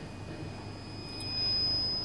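A steady high-pitched electronic whine, with a fainter second tone beneath it, over a low electrical hum and room noise; it gets a little louder near the end.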